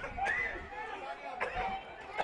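Indistinct chatter of several voices talking over one another, with a single sharp knock about one and a half seconds in.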